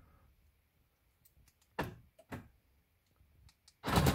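Sharp mechanical clicks of a car door's lock mechanism: two single clicks about two seconds in, then a louder quick clatter of clicks near the end.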